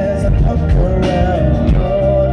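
Live band music with a male lead vocal holding and bending sung notes over keyboards and drums, loud and steady throughout.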